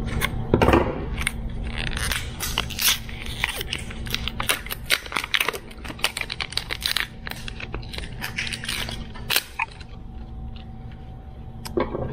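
Scissors snipping into blue plastic shrink wrap on a battery pack, then the wrap crackling and tearing as it is peeled off by hand: a dense run of irregular crinkles and rips that thins out after about ten seconds.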